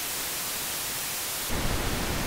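Pseudo-random white noise from a 31-bit linear feedback shift register in an ATtiny85, recorded by line-in: a steady, even hiss. About one and a half seconds in, it switches to the generator's pink noise, filtered at −3 dB/octave, which sounds deeper and less hissy.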